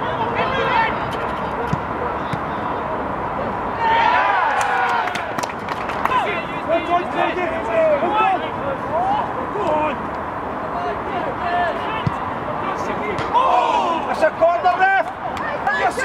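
Men's voices calling and shouting across an outdoor football pitch during play, loudest about four seconds in and again near the end, with a few short thuds of the ball being kicked.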